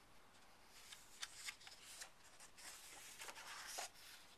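Faint rustling and brushing of a photobook's smooth matte paper pages under the fingers as they are held and turned, in short scrapes, loudest near the end.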